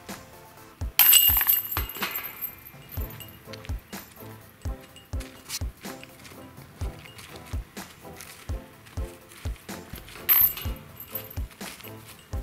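Metal chains of a disc golf basket struck and jangling: a sharp crash about a second in that rings on for about a second, and a shorter jangle near the end. Background music with a steady beat runs under it.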